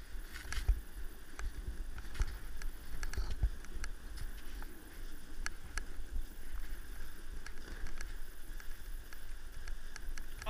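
A snowboard sliding down a snow slope: a steady low rumble of the board running over the snow and wind on the microphone, with scattered sharp clicks.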